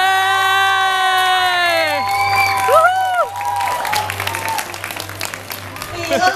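A group of young people screaming with joy in long, high-pitched held shrieks that rise at the start and fall away after two to three seconds, followed by clapping and crowd noise in the hall.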